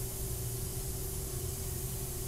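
Steady hiss of compressed air blowing out of the CNC router's ITM laser heads, over a constant machine hum with a steady mid-pitched tone.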